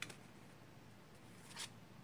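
Faint handling of tarot cards: a light tap as a card is set down on a slatted wooden surface at the start, then a brief card slide about one and a half seconds in.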